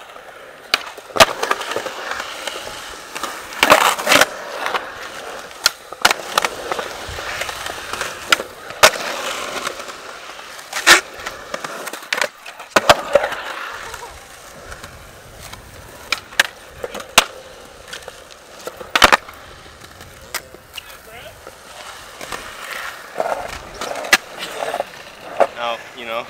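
Skateboard wheels rolling on a concrete skatepark surface, broken by sharp clacks of the board popping, landing and hitting the ground. The loudest hits come about 4, 11 and 19 seconds in.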